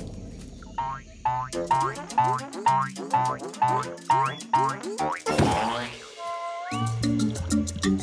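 Springy cartoon "boing" sound effects, about four a second, over children's cartoon music. About five seconds in comes a loud whoosh, then a bouncy bass line takes over.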